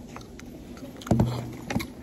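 A disposable lunch box handled right against the microphone: a loud, short, low scrape or rub about a second in, then a couple of sharp clicks.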